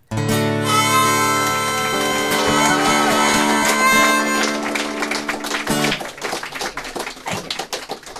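The song's closing chord on acoustic guitar with other instruments, struck at once, held and then stopped sharply about six seconds in. Audience applause comes in over its last moments and carries on after it.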